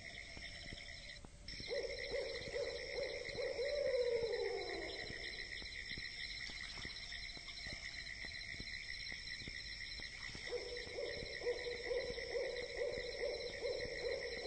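Faint ambient background track: steady high tones throughout, a low held tone starting about two seconds in that slides down in pitch around the fourth second, and another low held tone starting near the end.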